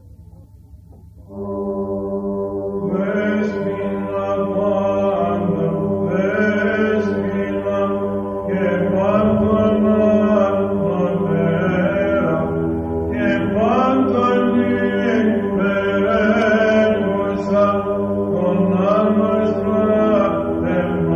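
Greek Orthodox church hymn in Byzantine chant: voices chanting a melody over a steady held drone, starting about a second in.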